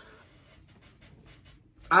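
A quiet pause in the talk, filled only by faint breathing. A voice starts up again right at the end.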